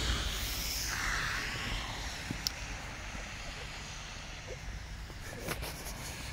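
Outdoor background noise: a steady hiss and low rumble that slowly fades, with a couple of faint clicks.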